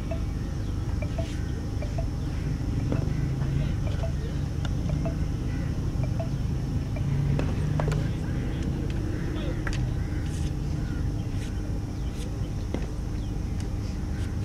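Outdoor background noise: a steady low rumble with indistinct distant voices and a few faint clicks scattered through it.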